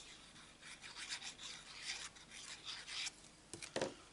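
Faint, irregular scratchy rubbing of paper cardstock being handled, as a die-cut circle is glued and pressed onto a card front, with a couple of light taps shortly before the end.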